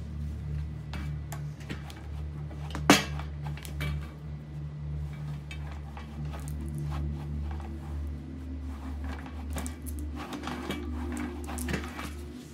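Soft background music with sustained low tones, over light clicks and taps of paper and cardboard being handled and laid down, with one sharp knock about three seconds in.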